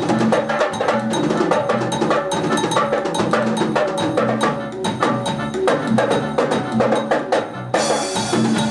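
Live band playing an instrumental passage: electronic keyboards carry the melody over electric bass, drum kit and percussion with a steady fast beat. The cymbals and percussion drop out briefly near the end.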